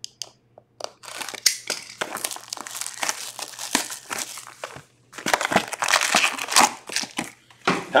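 Plastic shrink wrap on a hobby card box crinkling and tearing as it is slit with a box cutter and stripped off, in dense irregular crackles with a short pause about five seconds in.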